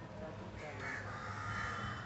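A crow cawing, starting about half a second in, over a low steady hum.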